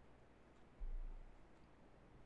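Near silence: room tone, with a brief low rumble about a second in that lasts about half a second.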